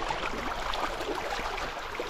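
Shallow, rocky stream running steadily, with light splashing as a landing net scoops a small rainbow trout from the water.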